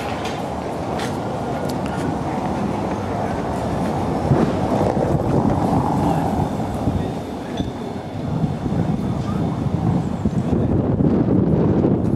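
A van driving past close by on a cobblestone street, its tyres rumbling roughly over the stone setts. The rumble gets louder about four seconds in.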